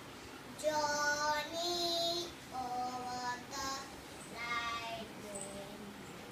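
A young girl singing unaccompanied, holding steady notes in short phrases with brief pauses between them.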